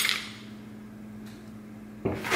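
A short knock right at the start, then quiet room tone with a low steady hum.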